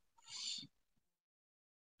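Near silence, broken by one short, faint breath about half a second in, then dead silence.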